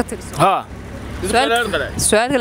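Talking in Somali, two short stretches of speech, over a steady low rumble of street traffic.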